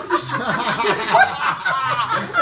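A man snickering, a quick run of short pitched laughs.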